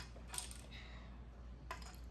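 Hard plastic transforming dinosaur toy pieces clicking and clacking as they are handled and set down. There are a few sharp clacks in the first half-second and one more near the end.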